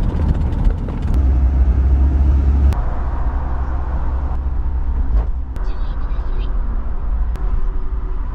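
Road noise inside a moving taxi's cabin: a steady low rumble with tyre hiss, heaviest in the first few seconds.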